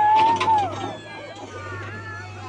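A person's raised voice holding one high note for most of a second, then falling away. Under it runs a steady low hum from the JCB backhoe loader's diesel engine.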